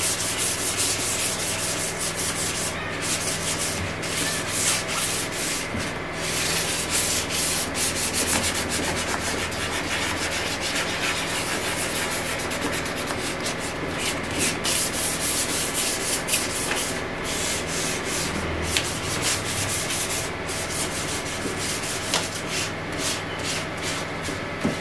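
Wet sanding of a primed steamer-trunk lid by hand with a small piece of sandpaper: quick, continuous back-and-forth rubbing strokes.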